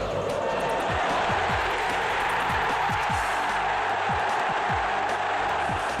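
Steady roar of a football stadium crowd cheering a goal, with low drum beats scattered through it.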